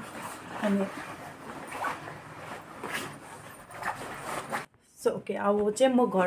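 A nylon puffer jacket rustling as it is swung on and pulled over the shoulders, for about four and a half seconds. A woman's voice starts near the end.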